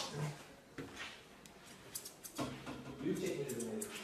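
A quiet room with a few faint clicks, then a soft, low murmuring voice from a little past halfway until just before the end.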